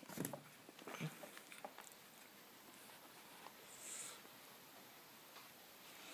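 Near silence, broken by a few faint clicks of handling in the first two seconds and a brief soft hiss about four seconds in.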